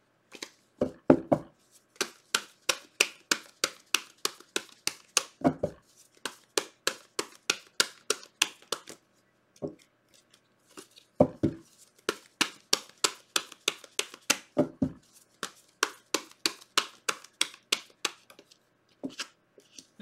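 Tarot cards being shuffled by hand: a steady run of crisp card slaps, about two or three a second, that pauses around ten seconds in and then resumes, with a few duller knocks of the deck among them.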